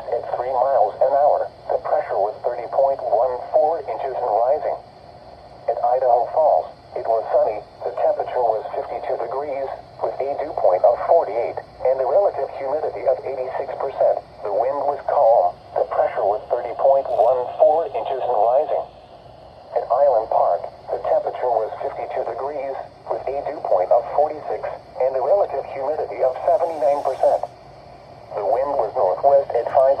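Synthesized voice of a NOAA Weather Radio broadcast reading the hourly weather observations, played through the small speaker of a Midland weather-alert radio. It speaks in phrases with short pauses, with a thin sound that has almost no bass.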